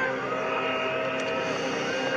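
Bees buzzing: a steady drone of several held tones.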